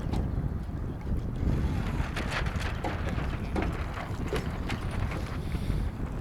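Wind buffeting an outdoor microphone: a steady low rumble, with scattered short ticks over it.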